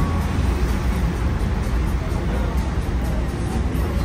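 Steady low rumble of a river cruise boat under way, heard from inside its enclosed dining cabin.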